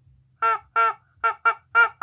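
Rubber chicken toy squawking as it is squeezed: about six short honks in quick succession, each at the same pitch.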